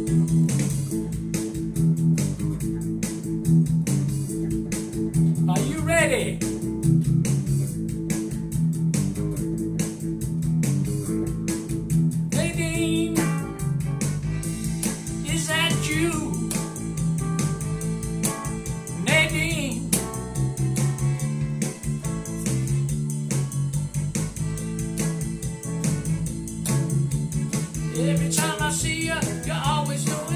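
Hollow-body electric guitar playing a rock-and-roll rhythm part over a backing rhythm with a steady beat, the instrumental intro before the vocal; a few short vocal sounds come in over it now and then.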